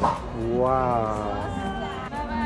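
A person's drawn-out exclamation of 'wow', its pitch rising and then falling, over background music.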